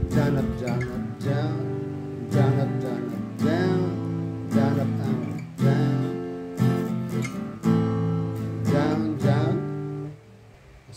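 Fender acoustic guitar strummed in a steady down, down-up-down-up pattern through the chords C, G, A minor and F. A strong downstroke falls about once a second, with lighter up and down strokes between.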